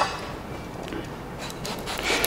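Faint scraping of a knife paring the skin off a mango.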